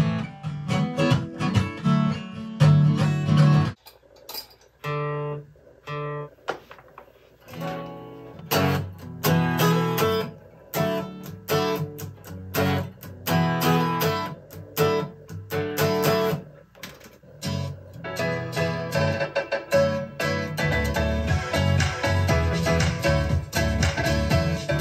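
Acoustic guitar playing chords, strummed and picked in a rhythm, with a short break and a few separate chords about four to six seconds in; heavier bass joins under it near the end.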